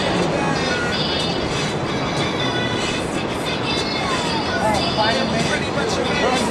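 A steady rushing noise with faint voices in it, stronger about four seconds in.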